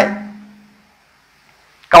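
A man's speaking voice ends a sentence on a drawn-out syllable that fades away over about a second, followed by a pause of near silence before he starts speaking again near the end.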